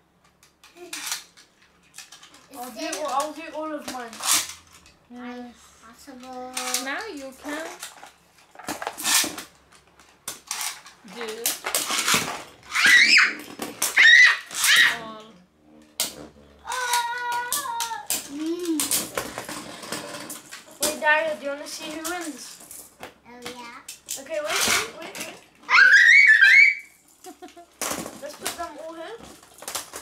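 Children's excited voices with loud high-pitched squeals, over Beyblade spinning tops clicking and clattering against each other and the walls of a plastic bin.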